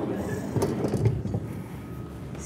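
Rustling and knocking picked up by a clip-on microphone as a person climbs onto a tall metal-framed bar stool.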